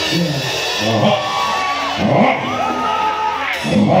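Live band music with a voice over the microphone in long arching, held phrases, and a crowd cheering and whooping.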